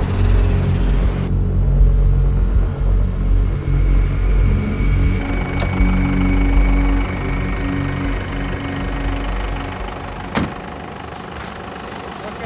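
Snowmobile engines running steadily in a convoy, a low continuous rumble, under film-score music with long held notes. A single sharp click about ten seconds in.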